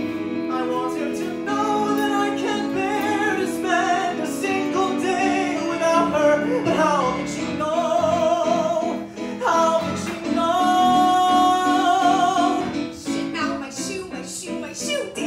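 A man singing a contemporary musical-theatre ballad with vibrato, accompanied by a Roland Juno-DS stage keyboard. Near the end he holds one long high note with vibrato.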